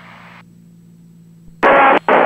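Aviation radio and intercom in a pilot's headset: a faint steady engine hum, then about one and a half seconds in a loud rush of radio static breaks in suddenly, carrying the stray music that is on the frequency.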